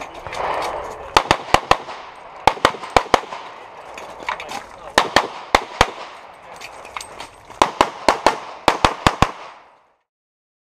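Pistol shots fired in rapid strings of about four, five strings in all, with pauses of roughly a second between them as the shooter moves from one shooting position to the next; the sound fades out just before the end.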